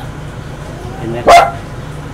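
A single loud dog bark, short and sharp, about a second and a quarter in.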